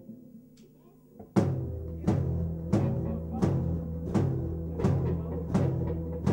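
A live band starting a song: faint low droning for about the first second and a half, then the full band comes in loud, with a heavy drum hit about every 0.7 s over sustained low notes.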